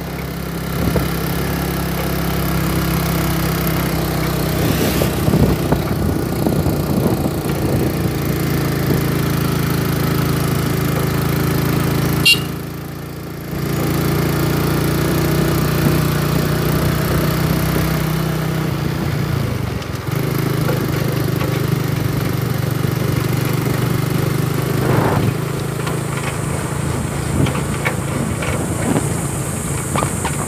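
A small motor vehicle's engine running steadily while travelling along a road, its level briefly dropping away near the middle.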